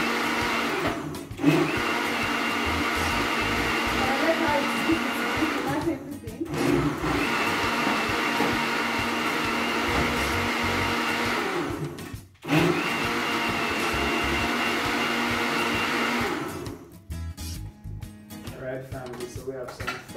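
Electric countertop blender running on watermelon, a loud steady motor sound. It is switched off briefly about a second in, again around six seconds and again around twelve seconds, then stops for good about sixteen seconds in.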